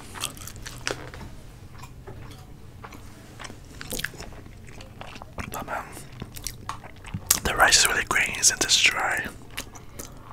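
Close-miked eating sounds: chewing with wet mouth clicks and smacks, and a metal spoon scooping rice in a plastic tray. About seven seconds in, a louder wavering sound lasts about two seconds.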